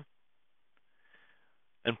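Near silence with one faint, soft breath drawn in about a second in. A man's speaking voice resumes right at the end.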